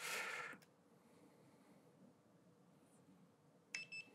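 A handheld infrared thermometer gives a click and a short high beep near the end as it takes a reading. Otherwise near silence, apart from a brief soft hiss at the very start.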